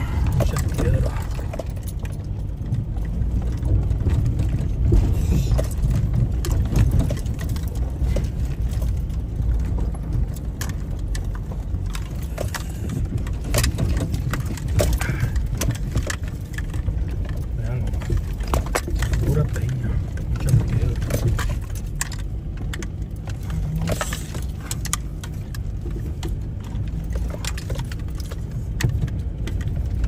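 Car driving slowly over a rocky dirt track, heard from inside the cabin: a steady low rumble of engine and tyres with frequent knocks and rattles as the wheels roll over loose stones.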